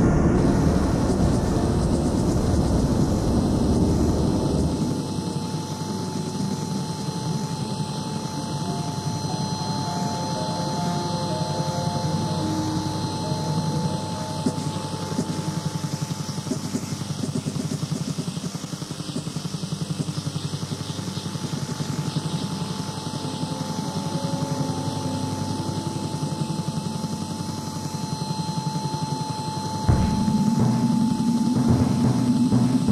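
Experimental ambient electronic music: a dense, rapidly pulsing low drone under a steady high tone, with faint short blips scattered through it. The deepest bass drops away about five seconds in.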